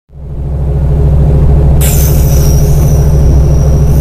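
A loud, steady low rumbling drone that starts at once. About two seconds in, a high hiss with a faint, slightly falling whistle joins it.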